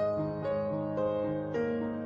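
Slow, calm piano music: held notes with a new note about every half second over a steady low bass.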